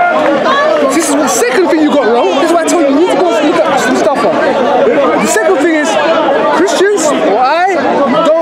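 Only speech: men talking over one another in a heated argument, several voices overlapping.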